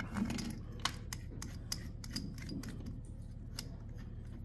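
Irregular small metal clicks and taps as a hole saw arbor is worked by hand into the jaws of a DeWalt joist driller's keyed chuck.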